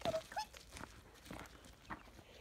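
Footsteps of a person and a dog walking away over dry grass and ground, a few soft, spaced steps. Near the start there are a couple of short, rising squeaky calls.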